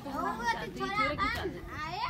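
Young children's high-pitched voices chattering and calling out in short bursts.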